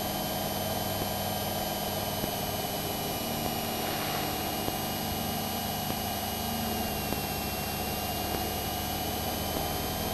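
Steady drone of a small aircraft's engine heard through the cockpit intercom feed, overlaid with a thin electrical whine. The whine dips slightly in pitch about seven seconds in, then comes back up.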